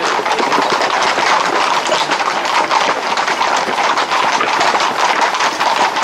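Hooves of a close-packed group of ridden Camargue horses clattering on a paved road, a dense, continuous patter of hoof strikes, mixed with crowd noise.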